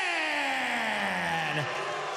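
A ring announcer's amplified voice holds one long, drawn-out vowel that slides steadily down in pitch and trails off shortly before the end. It is the theatrical stretched-out delivery of the wrestler's name, a voice the commentators say could crack glass.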